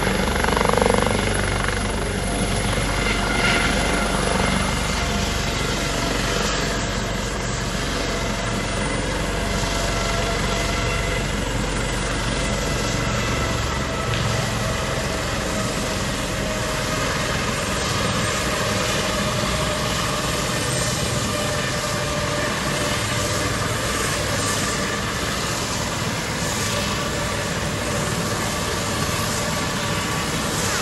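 Twin-turbine helicopter with a fenestron tail rotor touching down and running on the ground with a steady high turbine whine over the rotor noise. The deep rotor beat fades about halfway through, leaving mainly the whine.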